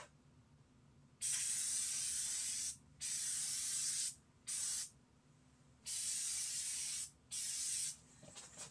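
Flex Seal aerosol can spraying in five separate bursts of hiss, each starting and stopping sharply, the longest about a second and a half.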